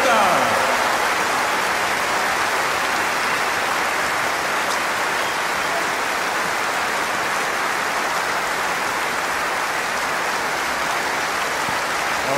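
Large concert audience applauding steadily, with a short vocal cheer at the start.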